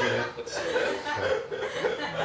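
Chuckling and laughter mixed with a person's voice.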